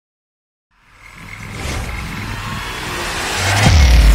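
Sound effects for an animated logo intro: after a short silence, a noisy riser swells steadily for about three seconds and ends in a sharp low hit near the end, with heavy bass starting as electronic music comes in.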